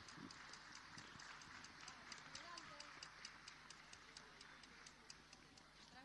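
Very faint audience applause dying away, ending in a few scattered claps that come a few a second and then thin out.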